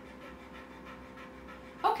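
Dog panting: quick, faint breaths at a steady rhythm, several a second.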